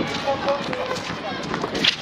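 Basketball players running on an outdoor concrete court: a busy patter of footsteps and shoe scuffs, with voices calling in the background.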